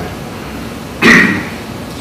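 A single short cough about a second in, in a lull between spoken sentences.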